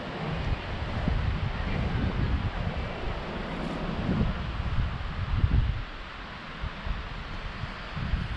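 Wind buffeting the camera microphone in uneven gusts, a low rumbling noise that eases off about six seconds in.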